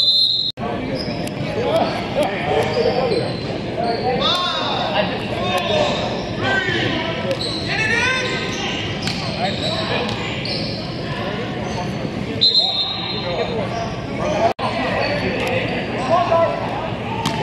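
Players shouting and calling out during a flag football play, echoing in a large indoor sports hall, with scattered short knocks and thuds.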